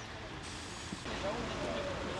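Background chatter of several people talking over a steady bed of street traffic noise. The sound changes abruptly about a second in, after which the voices are clearer.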